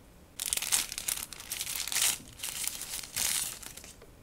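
Plastic packaging crinkling and rustling as it is handled, in irregular bursts that start about half a second in.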